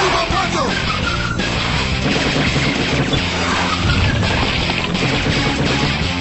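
Cartoon soundtrack: music under a continuous rushing, skidding noise effect.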